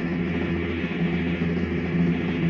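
Instrumental passage of a rock song from a home cassette recording: electric guitar and bass holding steady chords, with no vocals.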